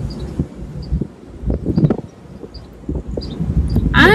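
Power convertible soft top closing overhead: a low rumble with scattered knocks and clunks.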